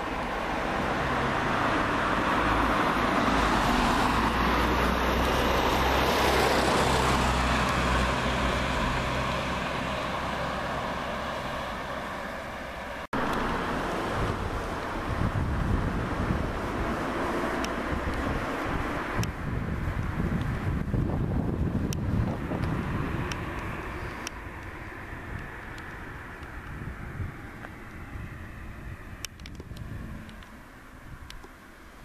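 A motor vehicle passing: engine and road noise swell over the first few seconds and then fade away, cut short by a sudden dropout about thirteen seconds in. After that, irregular low rumbles of wind on the microphone fade toward the end.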